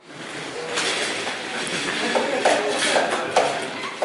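Room noise of a large open workshop space: a steady hiss with a few short knocks and faint snatches of voices.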